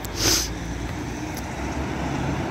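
Light street traffic: a steady low rumble of cars driving along a city street, with a short hiss in the first half-second.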